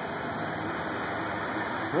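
Steady rushing outdoor background noise with no distinct events.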